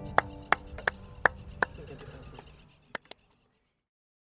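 Hand claps: five evenly spaced claps, about three a second, over the last acoustic guitar chord ringing out, then two quick claps near the end as the sound dies away.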